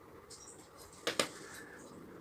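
Brick-built Lego spinning top released from its launcher onto a plastic Lego baseplate: a few light plastic clicks, then a sharp double click about a second in, followed by the faint sound of the top spinning on the plate.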